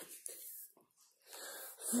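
A child's faint breathing: a soft breath early on, a brief hush, then a short inhale just before she speaks again near the end.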